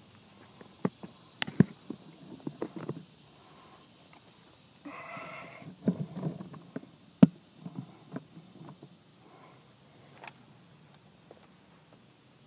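Handling noise from a camera being moved about and set up: scattered clicks and knocks, with a sharper knock about seven seconds in and a brief buzz about five seconds in, then footsteps on soil near the end.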